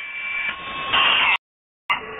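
Shortwave receiver audio while tuning the 41-metre band in sideband mode: hiss and static with faint steady whistle tones, growing louder about a second in. The audio then cuts out for about half a second and comes back as static with a steady low whistle.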